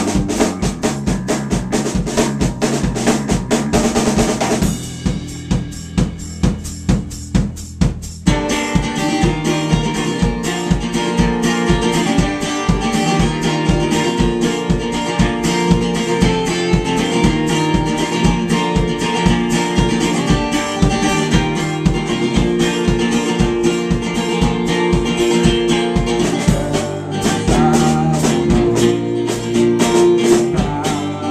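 Live rock band playing an instrumental passage on drum kit, electric bass and acoustic guitar. About five seconds in, the band drops to a few seconds of drums alone, then everyone comes back in.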